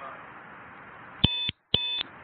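Two short electronic beeps about half a second apart, a double beep, over faint background hiss.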